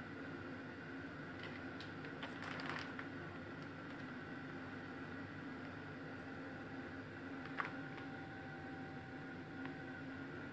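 Quiet room tone: a faint steady hum with a few soft clicks and rustles, a small cluster about two seconds in and a single click near three-quarters of the way through.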